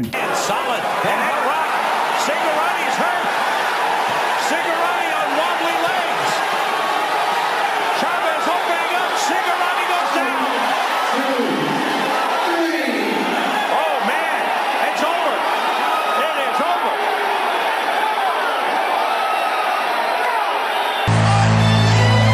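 Boxing arena crowd noise: a steady din of many voices from the fight broadcast. Near the end, music with a heavy bass cuts in suddenly.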